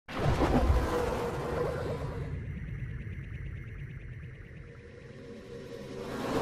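Synthesized music sting for a logo intro: a sudden loud hit that slowly fades away over several seconds, then swells up again near the end.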